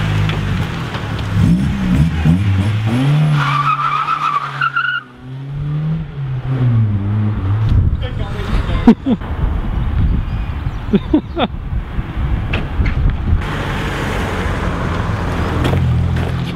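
Vauxhall Astra hatchback's engine revving and pulling away, its pitch rising and falling over the first several seconds, followed by engine and road noise as the car drives off.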